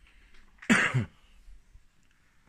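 A single short cough from a person, about three quarters of a second in, dropping in pitch.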